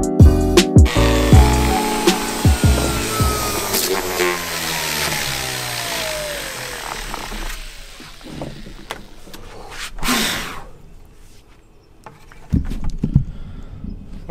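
Background music with a beat over the steady hiss of an old Porter-Cable palm sander working weathered spool wood, with a long falling whine. Both fade out by about halfway, leaving a quieter stretch of scattered knocks and a brief burst of noise about ten seconds in.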